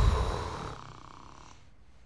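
A single loud snore that starts suddenly and fades out over about a second and a half.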